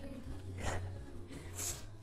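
A woman exercising breathes out audibly twice, about a second apart, between counts. A faint low steady hum lies under the breaths.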